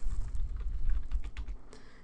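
Computer keyboard typing: a quick run of about half a dozen key clicks as a number is entered.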